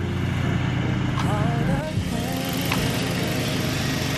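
A motor runs steadily with a low, even hum, and brief faint voices sound over it.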